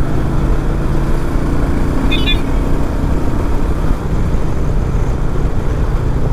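Royal Enfield Meteor 350's single-cylinder engine running steadily at road speed, with road and wind noise over it. A brief high-pitched beeping comes about two seconds in.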